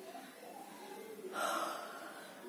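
A person's short, breathy gasp about a second and a half in, over faint background sound.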